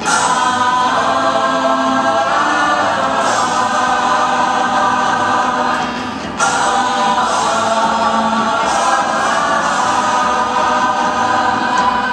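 A group of women singing together in harmony, holding long notes, in two phrases; the second phrase comes in sharply about six seconds in.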